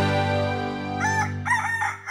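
A rooster crowing, starting about a second in, in several short rising-and-falling syllables that run into a long held final note. A sustained music chord fades out under it.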